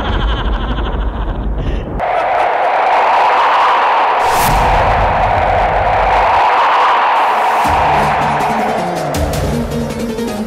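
Dramatic background music: a low rumbling section that changes abruptly about two seconds in to a loud, sustained rushing noise layered over intermittent deep bass notes.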